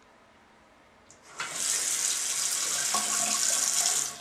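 Bathroom sink tap turned on about a second and a half in, water running into the basin with a steady hiss.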